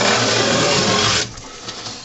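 Knife drawn along the inside wall of a corrugated cardboard box in a demonstration stroke, not cutting through: a scraping rub for just over a second, then dying away to a faint rustle.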